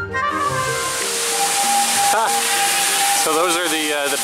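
Intro music ends about a second in, giving way to a loud, steady rushing noise. A steady high tone runs over the noise, and parrots make warbling calls about two seconds in and again near the end.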